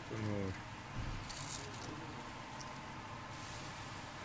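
A brief voiced sound, a short word or hum, right at the start, followed by faint steady background noise with a low hum.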